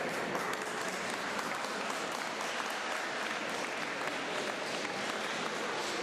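Audience applauding, many hands clapping at an even level.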